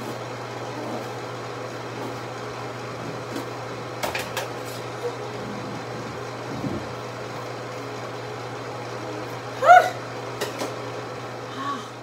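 Scissors snipping through hair a few times, short sharp clicks over a steady low hum. A brief vocal sound comes near the end.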